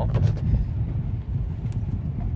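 Inside a moving car's cabin: steady low engine and road rumble while driving.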